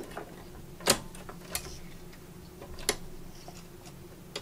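A sewing machine's presser foot being fitted back on and set in place, giving a few short clicks: the loudest about a second in, another near three seconds.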